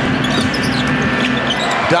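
Basketball being dribbled on a hardwood arena court, a few bounces over the steady noise of the arena crowd.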